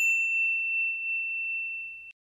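Notification-bell 'ding' sound effect: one clear high tone that rings on and slowly fades, its brighter overtones dying away within the first second.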